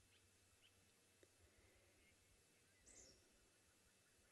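Near silence: faint outdoor background, with one short, faint high bird chirp about three seconds in.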